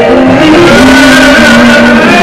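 Very loud church music with singing: held notes that step from one pitch to the next, accompanied by instruments.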